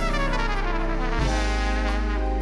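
A trumpet plays a solo line of quick rising and falling runs over a live band's bass and keyboard accompaniment.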